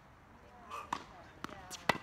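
Tennis ball being struck by rackets and bouncing on a hard court during a doubles rally: three sharp pops about half a second apart, the last and loudest near the end.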